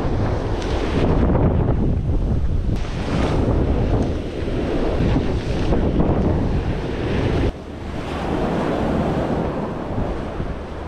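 Wind buffeting the microphone over surf breaking on the shore, with the rustle of a rain jacket sleeve brushing the camera. The low wind rumble drops suddenly about seven and a half seconds in.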